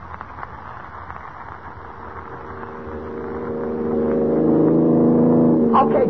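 Radio-drama sound effect of a car engine running, fading in about halfway through and growing steadily louder until it holds, heard through the hiss of an old 1940 broadcast transcription.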